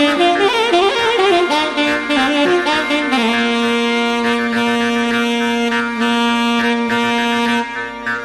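Alto saxophone playing a Carnatic melody in raga Bilahari: quick ornamented phrases with sliding, bending pitch for about three seconds, then one long low note held steady until shortly before the end.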